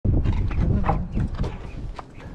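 Trunk lid of a Volkswagen sedan being unlatched and swung open by hand: a few short clicks and knocks over a loud low rumble of wind buffeting the microphone, which fades about a second in.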